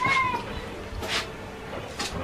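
A short, high-pitched cry at the start, lasting under half a second and dropping slightly in pitch at the end, followed about a second later by a brief hiss.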